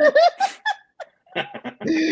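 People laughing in short bursts, with a brief pause about a second in.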